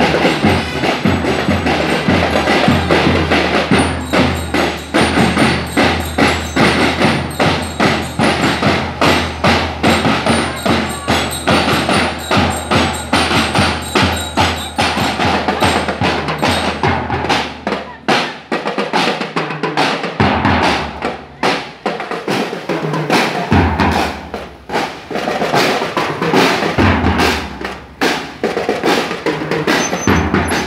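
A marching drum and lyre band playing: snare drums and bass drums keep a steady march beat, with bell lyres chiming over it.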